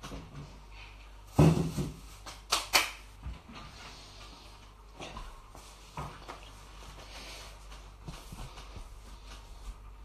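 Kitchen cupboard and things inside it being handled. A loud thump comes about a second and a half in, then two sharp clicks about a second later, then a few light knocks.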